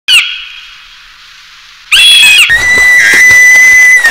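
High whistle-like tones: a short falling chirp at the start, a second chirp about two seconds in, then a steady high whistle held for about a second and a half with a brief warble in the middle.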